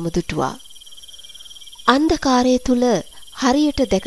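Steady chirring of crickets, a night-time ambience, under a voice speaking Sinhala. The voice pauses for about a second and a half in the middle, leaving the crickets alone.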